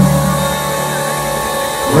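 Live indie-pop band playing, with a held low bass note and sustained keyboard chords in a short break between sung lines, heard from within the crowd.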